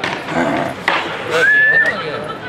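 A man's voice, ending near the end in a high, slightly rising squeal held for about half a second.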